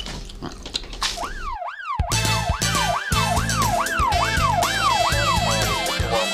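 A police siren wailing up and down about twice a second starts about a second in. Theme music with a steady, heavy beat joins it a second later.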